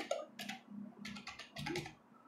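Computer keyboard being typed on: a quick, irregular run of keystrokes, pausing briefly near the middle.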